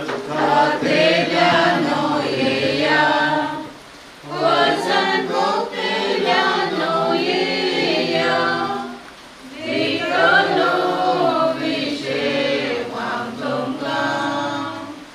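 A small group of voices singing a funeral hymn together, unaccompanied, in long phrases with short breaks about four and nine seconds in.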